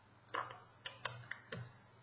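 Computer keyboard keys being pressed: about six light, separate clicks over a second and a half, the keystrokes moving a text cursor in an editor.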